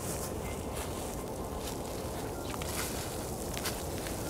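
Steady outdoor background noise in a wood, with a few faint rustles and clicks from handling and movement.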